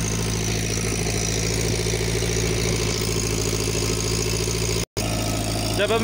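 Irrigation water pump's engine running at a steady, constant speed, an even low hum that doesn't change.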